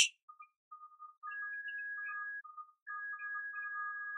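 Faint background music of thin, high sustained notes at two pitches that break off and come back.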